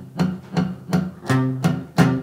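Acoustic guitar strummed several times on an open C major chord, each strum ringing on briefly. The low E string is muted by the fretting third finger and can be heard within the strums.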